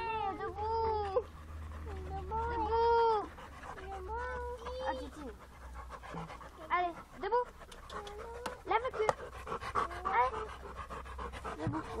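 A dog panting with open mouth, the breathing heaviest through the second half. In the first five seconds a high-pitched voice makes short rising and falling calls over it.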